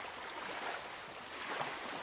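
Handling noise from a hardcover book being lifted and turned over on a wooden table: soft rustling and scraping of the cover against hands and tabletop, a little louder about halfway through.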